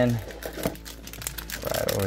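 Clear plastic accessory bags holding dice and counters crinkling and rustling as they are pulled out of cardboard boxes, with scattered light clicks.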